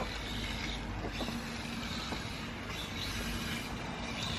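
Steady outdoor background noise, a low rumble and hiss with a faint steady hum, and a few light clicks as the plastic chassis of a radio-controlled truck is handled.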